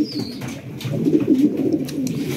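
Domestic pigeons cooing in a loft: low, warbling coos that rise and fall, overlapping from more than one bird.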